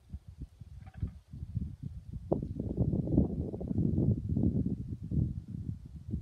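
Wind buffeting the microphone: a low, uneven rumble that grows louder about two seconds in.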